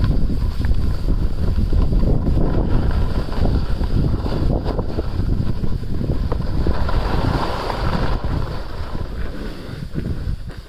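Wind buffeting a phone microphone during a downhill ski run, a steady low rumble, with the skis hissing and scraping over groomed snow. The hiss swells about seven seconds in and the sound eases a little near the end.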